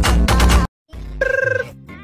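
Music with a heavy beat that cuts off abruptly. After a brief silence, a phone ringtone sounds once near the end: a warbling, trilling electronic ring about half a second long.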